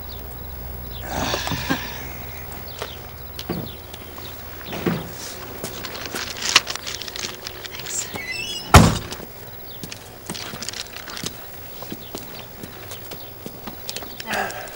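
Car door shut with a single heavy thunk about nine seconds in, preceded by a short high squeak. Scattered small knocks and footsteps come before and after it.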